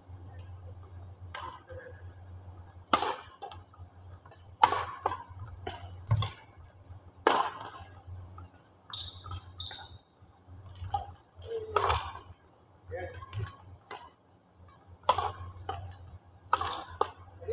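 Badminton rackets striking a shuttlecock in a rally: sharp, echoing smacks about one to two seconds apart, over a steady low hum.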